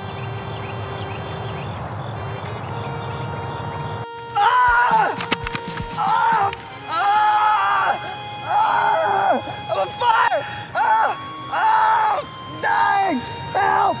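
Background music with long held notes, then from about four seconds in a person screams over it again and again, wordless cries rising and falling in pitch about once a second.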